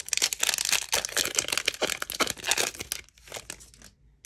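Crinkling of a Panini Prizm football card pack's glossy foil wrapper as the opened pack is handled and the cards are pulled out, a dense crackle for about three seconds that thins out near the end.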